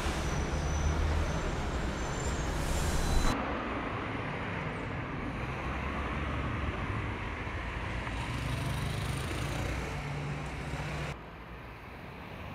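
Street traffic: motor vehicles running by with a low engine rumble. The noise changes abruptly about three seconds in and again near the end.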